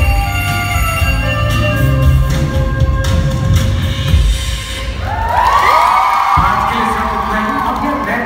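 Dance music playing over a stage loudspeaker system. About five seconds in, the audience breaks into high-pitched screams and cheers over the music.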